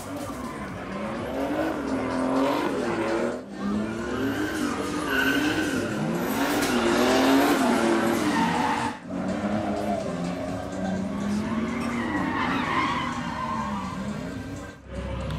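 Drift cars sliding on a wet track, engines revving up and falling back again and again, with tyres skidding. The sound cuts off briefly twice, about three and a half and nine seconds in.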